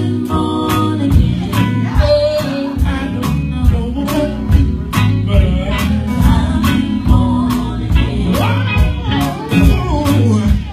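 Live gospel band: several singers on microphones backed by a drum kit and guitar, with a steady beat.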